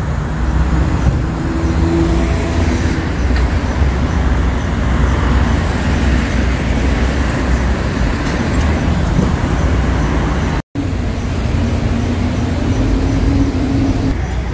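Loud, steady highway traffic: the continuous rumble of passing cars, with a low engine hum running through it. The sound cuts out briefly about eleven seconds in.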